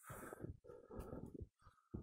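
A trekker's heavy, laboured breathing close to the microphone, about two long breaths, a sign of breathlessness at high altitude.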